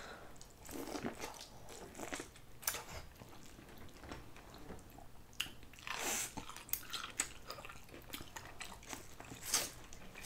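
Eating sounds from a shrimp boil: shrimp pulled apart by hand and corn on the cob bitten and chewed, heard as scattered wet clicks and short crunches with quiet gaps between.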